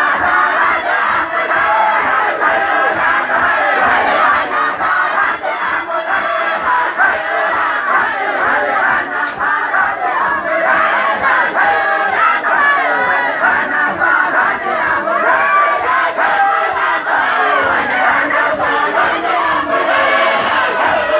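Large crowd of men chanting a Sufi dhikr together, many voices overlapping in a steady, loud mass of sound.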